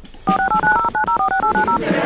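Mobile phone keypad tones as a number is dialled: a rapid run of about fifteen short two-note beeps over about a second and a half.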